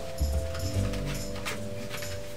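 Soft background music with long held notes, over a few light clicks and taps of stiff cardboard pieces being handled and slotted together.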